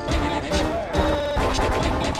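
Several Sparta remixes playing over one another: dense, layered remix music with a steady beat and sampled crash effects. The top end drops away briefly in the middle, then comes back in with a hit.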